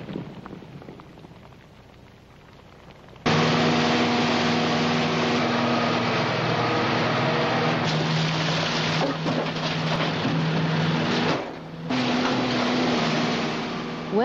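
The fading rumble and patter of debris after an open-pit rock blast. About three seconds in, a sudden cut to the loud, steady drone of a heavy diesel excavator loading blasted ore into a haul truck, with a few knocks.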